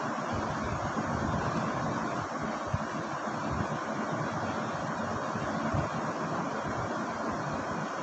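Steady background noise of the recording, an even hiss with a low rumble under it, with one brief faint click a little under three seconds in.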